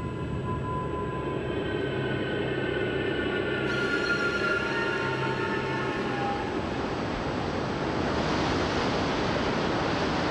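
Eerie music score of long held tones, which fade as a rushing wind-and-surf noise swells in the second half.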